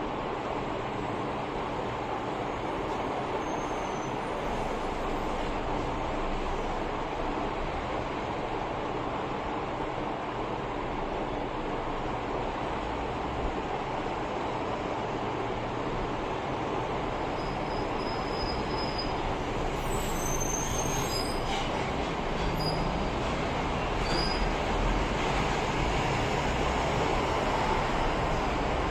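A steady, even rushing noise that grows slightly louder over the last few seconds, with a few faint high chirps about two-thirds of the way through.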